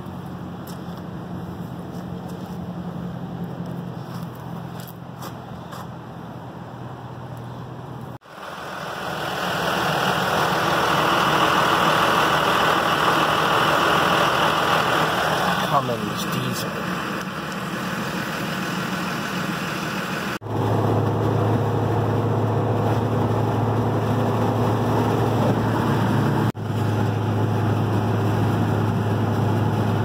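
Engine and road noise of a 2006 Ford Mustang's 4.0 V6, in short clips cut together. It opens with a steady low hum, then louder road noise about eight seconds in, then a steady low engine drone from about twenty seconds in, heard from inside the cabin at highway speed.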